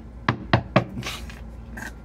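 Three sharp knocks on a hand-held deck of tarot cards, about four a second, followed by a brief soft hiss.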